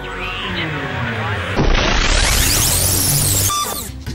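Intro music overlaid with a whooshing transition sound effect that swells sharply about one and a half seconds in, with sweeping pitch glides through it, and drops away just before the end.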